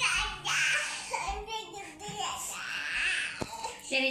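A toddler crying and whining in several high-pitched wails.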